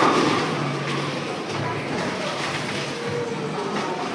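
Steady din of a bowling alley: balls rolling down the lanes, with faint voices in the hall.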